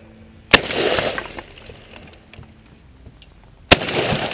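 Two gunshots about three seconds apart, fired at close range into a CPR training manikin. Each shot is a sharp crack followed by about a second of clattering, decaying noise.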